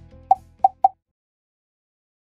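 Three quick cartoon pop sound effects, short and pitched, about a third of a second apart, as the background music ends.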